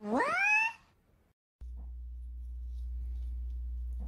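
A cat gives one meow, rising steeply in pitch and lasting under a second. After a short gap, a steady low hum sets in.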